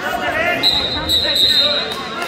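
Spectators shouting while a wrestler is taken down onto the mat, with thuds of bodies hitting it. A steady whistle sounds for about a second through the middle.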